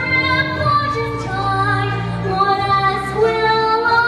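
A young girl singing a slow song into a microphone over an instrumental accompaniment, holding long notes.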